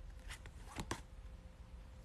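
Tarot cards being handled and rearranged in the hands: a few faint soft clicks, two of them close together near the middle.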